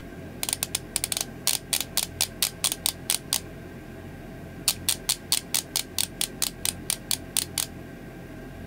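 Benefit BROWVO! conditioning brow primer, a click-pen dispenser, clicked over and over to push product up to its brush tip on a new, never-used pen: two runs of sharp clicks, about six a second, with a short pause between them.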